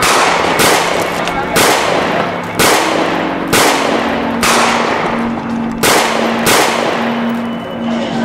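A string of gunshots at uneven spacing, roughly one every half second to a second, each with a ringing tail. A low held music tone comes in about three seconds in.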